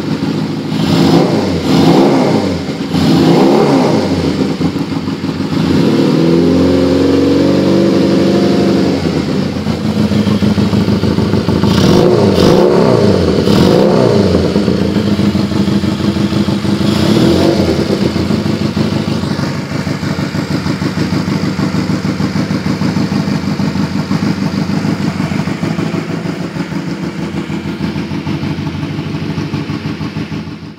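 Honda CM125's air-cooled parallel-twin engine running, with a pod air filter: several quick throttle blips, then revs held higher for a few seconds, more blips, then a steady idle for about the last ten seconds.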